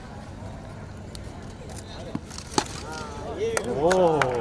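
A single sharp crack of a cricket bat hitting the ball about two and a half seconds in, followed near the end by several people shouting and cheering in reaction to the shot.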